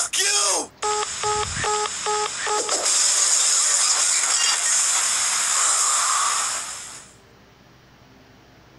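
A brief voice, then five short identical electronic beeps in a row, like a phone's call-ended tone. A steady hiss follows and fades out near the end.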